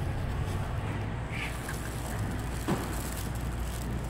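Steady low rumble of parking-garage background noise, with a faint short click a little under three seconds in.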